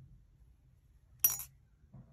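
A single brief, light clink about a second in, as a metal crochet hook knocks against something hard while the crocheted piece is turned in the hands.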